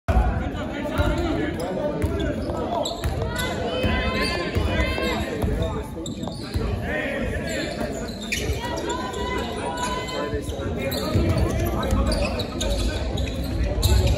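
Basketball bouncing on a hardwood gym floor, repeated thuds during play, with voices echoing around the hall.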